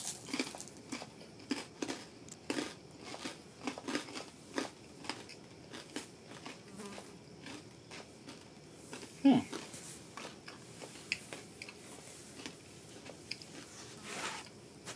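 Brown rice crackers with black sesame being bitten and chewed close to the microphone: irregular crunches, busiest in the first few seconds and thinning out after.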